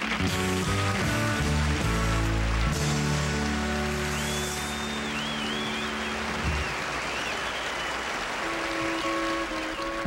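A live country band with electric guitar and drums finishes a song on loud held final chords, then audience applause with a whistle from the crowd follows. A few sustained band notes come in near the end.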